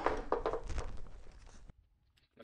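A few small knocks and clicks of tools and parts being handled on a workbench, growing fainter, then cut off suddenly near the end.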